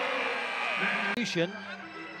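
Basketball arena crowd noise after a made basket, fading away. An abrupt edit cut just over a second in brings a brief word-like fragment and a quieter crowd murmur.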